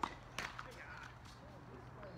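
Tennis ball being played in a rally: two sharp pops less than half a second apart, the first louder.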